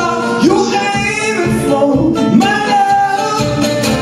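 A man singing long, sliding notes live over a strummed archtop guitar, the strums growing steadier and more even toward the end.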